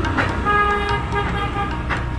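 A vehicle horn sounds one steady note for about a second over the low rumble of street traffic.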